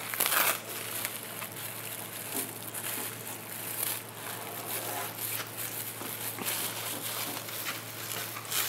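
Plastic masking film crinkling and rustling as it is pulled from a roll and handled over the engine bay, with small irregular clicks and scrapes.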